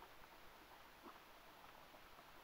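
Near silence: faint steady background hiss, with one brief faint sound about a second in.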